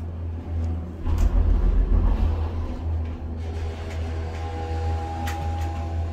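Cable-car gondola cabin riding along its line, heard from inside: a steady low rumble, with a heavier low buffeting about a second in. Near the end a steady humming tone joins it.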